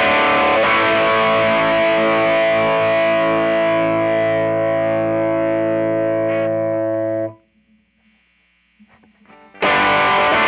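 Overdriven electric guitar through a Mooer Blues Crab pedal and a Fender Blues Junior IV amp: a chord struck just under a second in rings out for about six seconds, then is muted abruptly. Only faint amp hum remains for about two seconds before the next chord is hit near the end.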